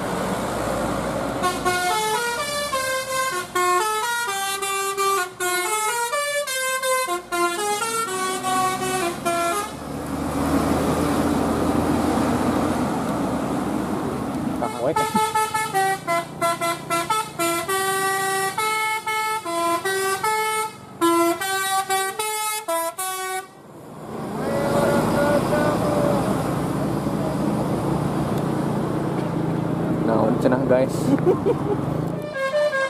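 Bus telolet musical horn (Basuri type) playing a quick tune of stepped notes, twice: from about a second and a half in to about ten seconds, and again from about fifteen seconds to twenty-three. Between and after, a bus engine runs under road noise.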